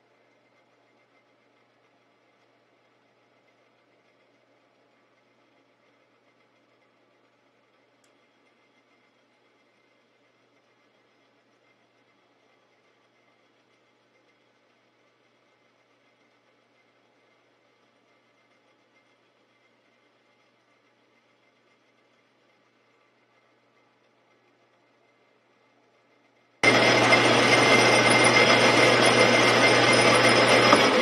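Metal lathe turning a steel punch blank: a very faint, steady machine hum with a few fixed tones for most of the time. Near the end the lathe's running sound comes in suddenly loud and steady.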